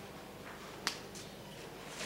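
Faint room noise with a single sharp snap a little under a second in.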